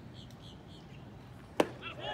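A single sharp pop about one and a half seconds in, typical of a pitched baseball smacking into the catcher's leather mitt, over faint open-air background.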